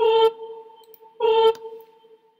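Online notation software sounding single notes as they are entered on a melody staff: two notes of the same pitch about a second apart, each starting sharply and dying away.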